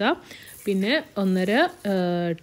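A woman's voice, with a faint hiss of oil sizzling in the pot in the pause about half a second in.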